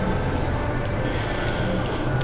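Steady low hum and hiss of commercial-kitchen room noise, with a few faint light clicks.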